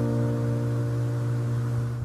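Steel-string acoustic guitar's final strummed chord ringing out and slowly fading at the end of the song.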